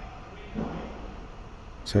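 Steady low background hum in a pause between narration, with a faint brief sound about half a second in. A man's voice starts right at the end.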